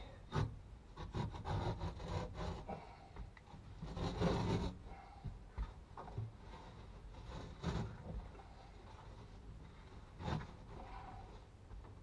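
Irregular rubbing and scraping with scattered knocks, from hands and tools working on the stripped interior of a VW Beetle; the longest scrape comes about four seconds in.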